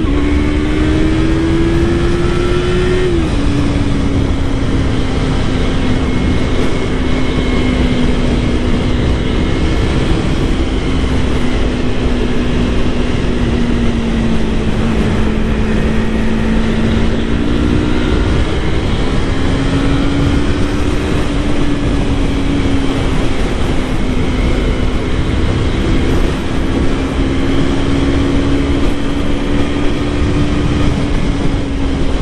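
2019 Yamaha R3's 321 cc parallel-twin engine pulling under way, over heavy wind noise on the microphone. The engine note rises, drops sharply with an upshift about three seconds in, sags slowly, climbs again a little past the middle and then holds steady.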